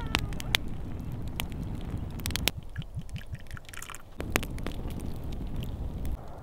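Wood campfire crackling, with sharp pops scattered irregularly throughout over a steady low rumble.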